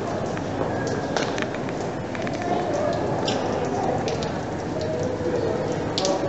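Steady background rush with scattered light clicks and faint distant voices.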